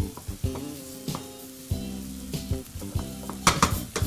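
Diced peppers and zucchini sizzling in a frying pan while a spatula stirs and scrapes them across the pan, with a few sharper scrapes about three and a half seconds in.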